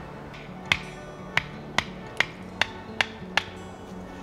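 Wooden baton knocking seven times in quick succession, about half a second apart, to split a stick held upright on a stump (batoning), over soft background music.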